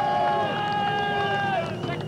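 A man's voice holding one long, high, drawn-out call on a single pitch, which ends near the end.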